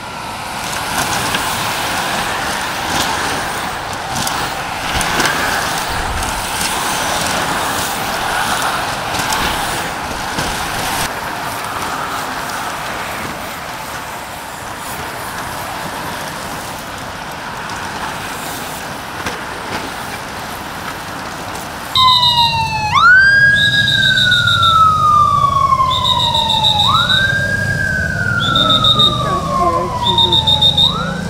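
Police motorcycle sirens. About two-thirds of the way in, two sirens start abruptly and loudly: one wails, rising quickly and falling slowly about every two and a half seconds, and the other repeats a higher tone. Before that there is only a steady noisy background.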